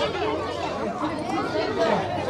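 Several children's and adults' voices chattering over one another, with no single voice standing out.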